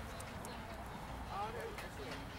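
Indistinct talk from people nearby, with a voice rising briefly about one and a half seconds in and a few faint clicks.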